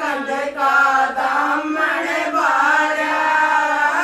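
Women singing a traditional Haryanvi folk song (lokgeet) unaccompanied, in long held, wavering notes.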